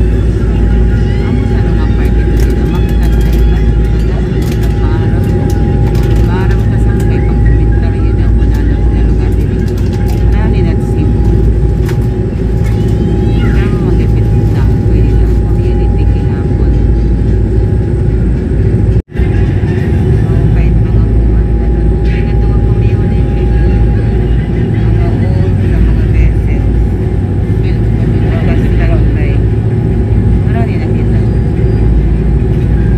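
Fast passenger ferry's engines running loudly, heard inside the cabin: a deep steady rumble with a thin steady whine above it and faint passenger voices in the background. The sound cuts out for a moment about two-thirds of the way through.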